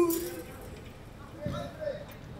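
A man's long shout falls in pitch and trails off in the first half second. After it come faint voices from the pitch and a soft thud about one and a half seconds in.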